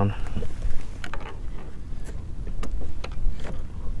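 Steady low rumble of wind and water on a kayak-mounted camera as the kayak drifts on choppy water, with a few short light clicks and knocks of gear scattered through.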